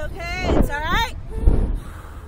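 A rider's two high-pitched wordless cries in the first second, over wind buffeting the on-board microphone as the slingshot ride swings.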